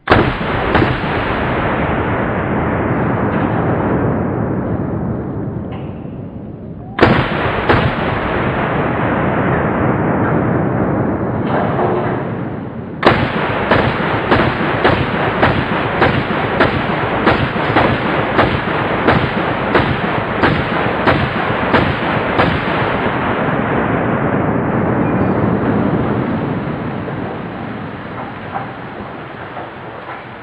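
Semi-automatic Browning Automatic Rifle in .30-06 fired as fast as the trigger can be pulled. Single loud reports come at first, then a fast even string of about two shots a second, each report smeared by heavy echo that fills the gaps.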